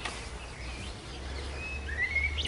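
Faint birds chirping in the background over a low steady rumble, with a short rising chirp near the end.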